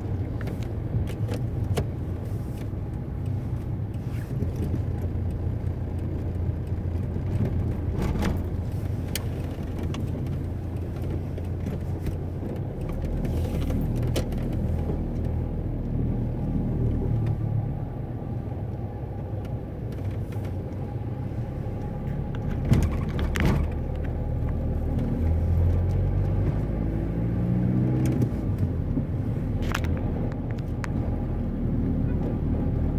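Engine and road noise of a car driving slowly in town, heard from inside the car: a steady low rumble with scattered clicks and rattles and one sharper knock a little after the middle. Near the end the engine note rises as the car speeds up.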